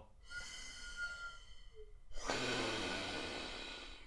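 Breath moving through the plastic tube of a Breath Builder breathing trainer: first a quieter draw of air with a thin whistle for about two seconds, then a louder steady rush of air through the tube that gradually fades.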